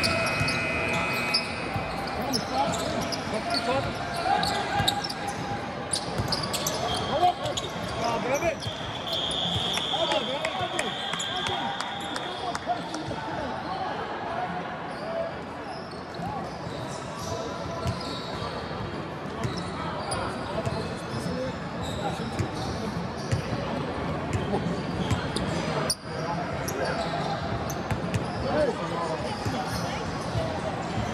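Basketballs bouncing on an indoor court floor, with many knocks heard throughout, over a steady murmur of many voices echoing in a large sports hall.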